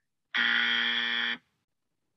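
A game-show wrong-answer buzzer: one flat, steady buzz about a second long that starts and cuts off abruptly, marking the guess as incorrect.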